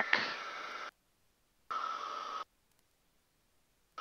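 Piper M600 cockpit noise picked up through an aviation intercom headset microphone: a faint steady hiss with a hum in it. It cuts off abruptly under a second in as the voice-activated squelch closes, opens again briefly around the middle, then drops to dead silence.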